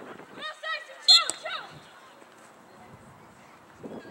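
A referee's whistle blown once, short and loud, about a second in, stopping play for a foul after a player has been knocked down. High-pitched shouts from players and spectators come just before and around it.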